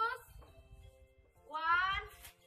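A cat meowing twice, each call rising in pitch, the second one louder, over soft background music.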